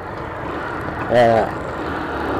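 Motorcycle engine running while being ridden, under a steady rush of wind and road noise. About a second in the rider says one brief word.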